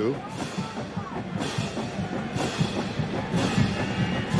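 Drum-driven band music in the stadium, with a heavy drum strike about once a second.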